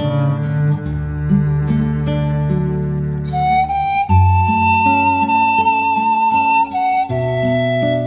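Panflute playing a slow hymn melody over a backing track of bass and plucked accompaniment. The panflute enters about three seconds in with a long held note, then moves on to the next notes of the tune.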